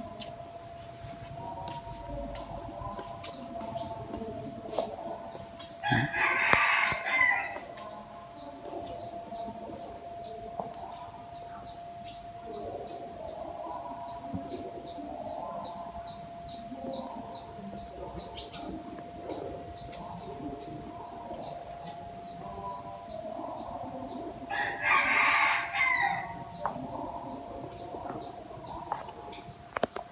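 A rooster crowing twice, about six seconds in and again about twenty-five seconds in, each crow lasting under two seconds. Underneath is a steady faint hum and a run of quick, faint high chirps.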